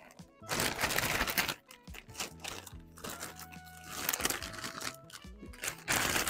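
Clear plastic packaging bag crinkling as it is opened and handled, loudest for about a second near the start, then softer rustles. Background music plays throughout.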